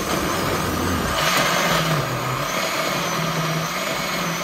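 Oster countertop blender running steadily, puréeing a liquid marinade of toasted chiles, tomatoes, onion and beef stock; the motor's hum dips briefly midway as the load churns.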